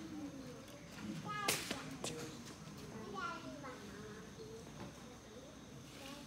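Faint chatter of people talking in a large hall, with a child's high voice rising briefly. A sharp knock comes about one and a half seconds in, and a lighter one about half a second later.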